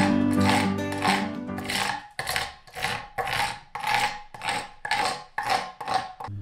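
Quick back-and-forth strokes of a hand scraper across the face of a glued-up maple and mahogany strip panel, about two to three strokes a second. Acoustic guitar music fades out over the first two seconds.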